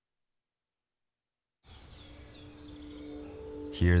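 Dead silence for about the first second and a half, then outdoor ambience with birds chirping faintly over a low steady tone, gradually getting louder until a voice begins right at the end.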